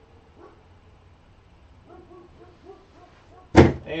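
A run of short barks from a distant dog, faint, then a single sharp thump near the end, by far the loudest sound.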